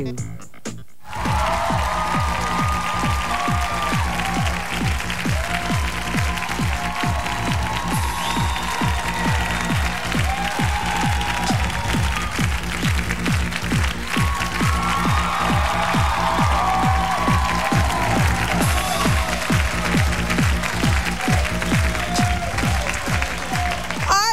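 Studio audience applauding over talk-show theme music with steady bass and a melody, starting about a second in after a brief lull.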